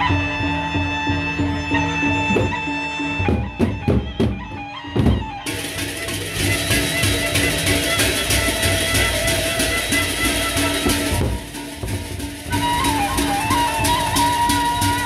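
A Sasak gendang beleq ensemble playing: a sustained melody line over drum beats, with a few hard drum strokes in the first seconds. Then a dense clashing of many hand cymbals takes over about halfway in, breaks off briefly near the end, and the ensemble picks up again.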